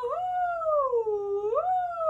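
A woman singing one long, unbroken 'ooh' vocal glide. The pitch jumps up quickly and then slides slowly down, twice, with the second rise about one and a half seconds in, tracing the loops of a vocal warm-up siren.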